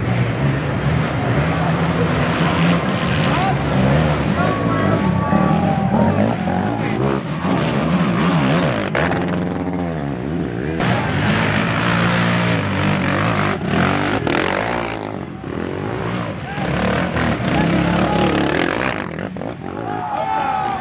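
Racing ATV engines revving hard as they climb a dirt hill, the pitch dropping and rising again about halfway through, with spectators shouting and talking over them.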